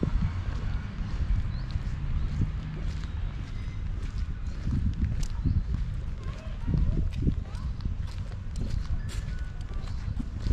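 Footsteps on stone paving as the camera-holder walks, over a steady low rumble of wind on the microphone.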